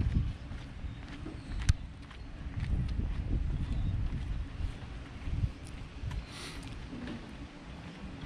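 Wind buffeting the camera microphone: an uneven low rumble that swells and fades, with one sharp click a little under two seconds in.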